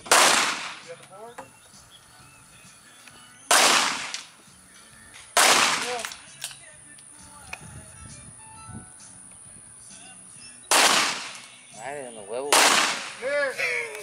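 Five semi-automatic pistol shots, each a sharp crack with a short fading tail, unevenly spaced: one right at the start, two about two seconds apart a few seconds in, and two more near the end.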